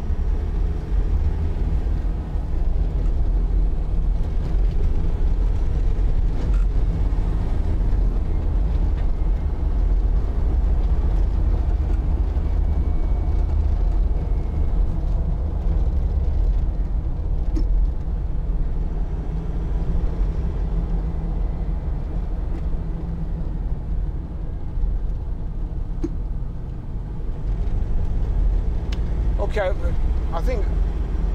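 Land Rover Defender 90's 2.2-litre four-cylinder turbodiesel and road noise at driving speed, a steady low drone heard from inside the cabin. It eases off briefly near the end.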